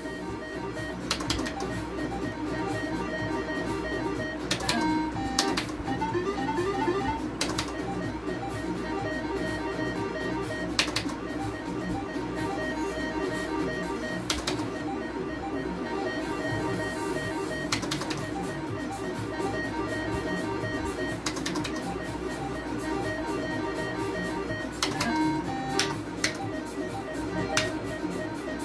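Gold Fish electronic slot machine playing its looping game music, with sharp clicks every few seconds.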